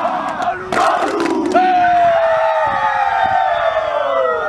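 A rugby team's pre-match war cry by a huddle of schoolboys: rhythmic shouting in unison with a few sharp hits, then from about a second and a half in one long shout held by many voices, slowly falling in pitch.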